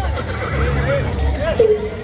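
A horse whinnying, a wavering call that drops in pitch near the end, over crowd voices.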